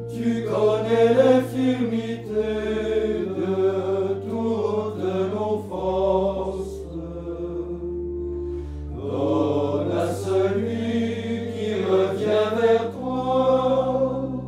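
Men's voices chanting together in French, a sung Lenten evening office, with long held low notes underneath that change every few seconds.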